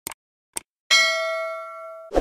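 Animated subscribe-button sound effects: two short mouse clicks about half a second apart, then a notification-bell ding that rings out and slowly fades.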